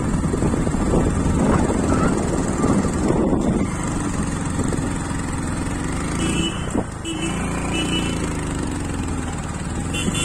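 Motorcycle engine running while being ridden along a road, with a rushing rumble of wind on the microphone in the first few seconds. The engine note rises and falls in pitch in the second half.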